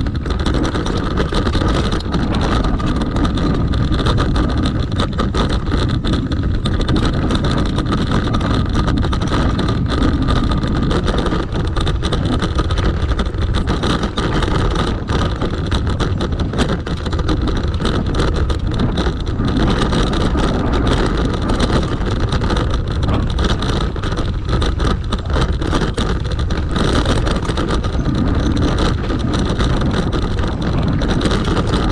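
MSUB bike riding over rocky dirt singletrack, heard through its handlebar-mounted camera: continuous rattling and jolting over the rocks with a low rumble and wind on the microphone, and a steady high whine running through it.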